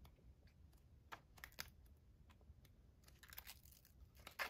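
Faint rustles and crinkles of sticker-book paper sheets being handled and turned, with a few short crackles about a second in, around a second and a half, and again just past three seconds.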